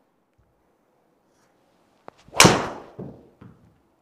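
Golf driver striking a ball off a tee: one sharp, loud crack about two and a half seconds in, followed by two softer thuds.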